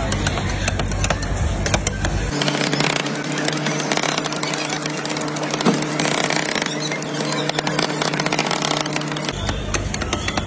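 Two metal spatulas rapidly tapping, chopping and scraping on a steel rolled-ice-cream cold plate as pieces are chopped into the freezing cream base. The strokes come thick and fast over background noise, which turns to a steady hum from about two seconds in to about nine seconds in.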